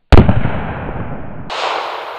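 A single loud .45-calibre pistol shot just after the start, its echo dying away over the following second or so.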